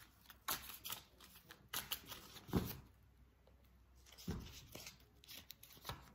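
Tarot cards being shuffled and handled: faint, irregular rustles and flicks, with a soft thump about two and a half seconds in and another just past four seconds.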